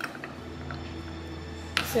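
A steel spoon clinking faintly in a glass jar of green chillies pickled in vinegar, a few light ticks over a low steady hum, with a short louder rustle near the end.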